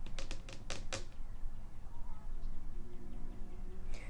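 A tarot deck being handled and shuffled by hand: a quick run of about seven crisp card clicks in the first second, then only a low steady hum.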